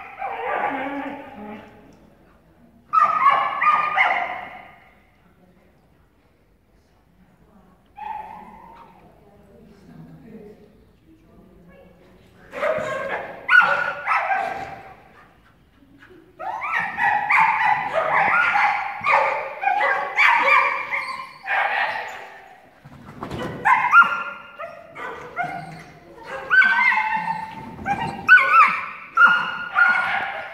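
Dog barking and yelping in short repeated bursts, a couple of bursts near the start, then almost without a break through the second half.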